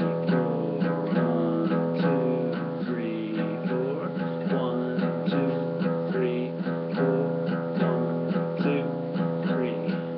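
Acoustic guitar playing a 12-bar blues shuffle rhythm in E, picked on the two lowest strings: the open low E drones while the A string alternates between fretted notes in an even, repeating pattern.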